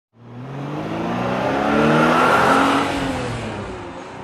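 A car engine accelerating as it comes closer, rising in pitch and loudness to a peak about two and a half seconds in, then fading away.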